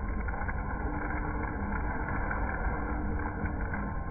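Aillio Bullet R1 drum coffee roaster running: a steady motor-and-fan drone with a low rumble, with coffee beans tumbling in the rotating drum and giving off a few light clicks.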